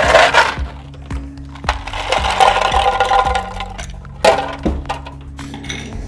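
Ice cubes clattering into a cut-glass mixing glass: a sharp rattle at the start, a longer run of clinking about two seconds in, and another hit a little after four seconds. Background music plays underneath.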